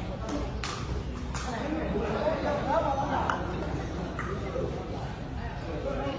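Sepak takraw ball being kicked during a rally: several sharp knocks in the first second and a half. Spectators' voices follow over steady hall noise.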